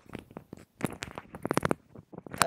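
Handling noise on a desk: an irregular run of small clicks and rustles, busiest in the middle, as hands move cables and small hardware.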